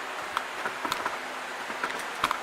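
A few light clicks and taps from a small wagon wheel being handled, over a steady background hiss.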